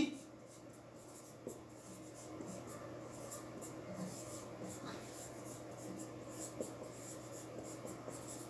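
Marker pen writing on a whiteboard: faint, scratchy strokes coming and going as the formula is drawn, over a steady low hum.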